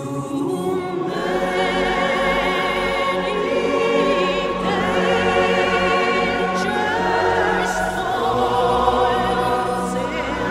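Background music: a choir singing long sustained notes with vibrato over a low swelling accompaniment, rising in level at the start.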